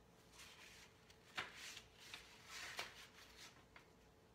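Faint rustling of paper pages being handled and turned, with a couple of sharp little clicks, over a low steady room hum.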